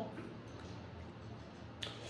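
Faint room tone while tarot cards are handled, with one sharp click near the end as a card is flicked or set down.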